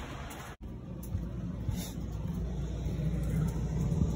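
Low, steady hum of a motorhome's freshly cleaned and reinstalled basement air-conditioning unit running. It drops out abruptly for an instant about half a second in, then continues, growing slightly louder toward the end.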